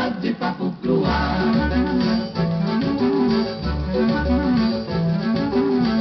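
Instrumental interlude of a 1950s cateretê played from a 78 rpm record: a quick run of notes in the first second, then a plucked-string melody rising and falling over a pulsing bass, with the top end cut off as on an old disc transfer.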